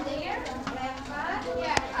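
Faint children's voices and chatter in a classroom, with a single sharp click near the end.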